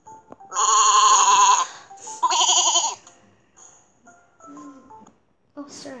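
Two sheep bleats in quick succession from a cartoon sound effect, the first about a second long and the second shorter, each with a wavering pitch.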